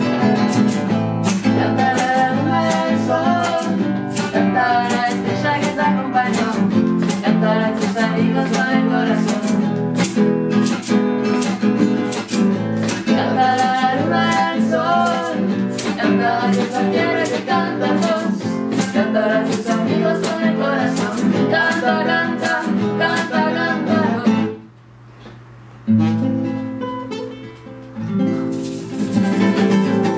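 Acoustic guitar strummed in a steady rhythm with singing and an egg shaker, the song stopping suddenly about 24 seconds in. Then a couple of last strummed chords are left to ring.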